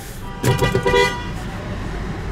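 A vehicle horn honks once for about half a second, a steady single-pitched blare, about half a second in, heard from inside a car over a steady low rumble of traffic.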